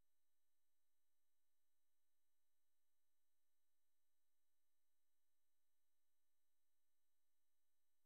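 Near silence: only a very faint steady hum.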